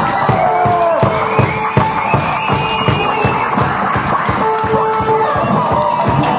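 Live blues band: violin and slide guitar over a steady kick-drum beat of about three strokes a second, with held fiddle notes and sliding pitches.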